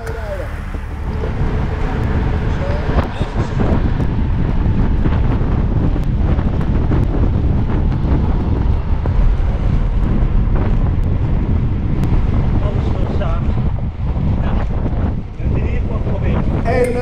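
Heavy wind buffeting on the microphone of a handlebar-mounted camera on a road bike ridden at race speed: a dense, fluttering rumble that does not let up.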